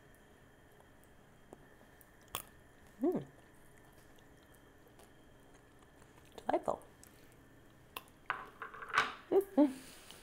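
A person eating toasted, salted pumpkin seeds (pepitas): quiet chewing with a couple of short hums, and a busier, noisier stretch near the end.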